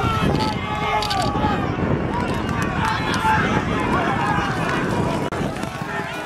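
Spectators shouting and cheering together while racehorses gallop past on a dirt track, their hooves pounding underneath.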